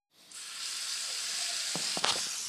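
Bathroom tap running steadily into the sink, a steady hiss of water that starts just after a brief silence.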